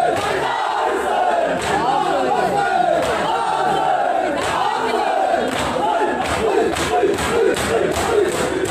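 Crowd of men chanting together, many voices overlapping. In the second half, sharp slaps come in a fairly even beat of about three a second, in the way of matam chest-beating.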